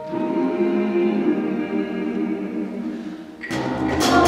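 Mixed choir singing sustained, held chords. Just after three seconds the sound dips briefly, then comes back louder and fuller, with deeper notes added, near the end.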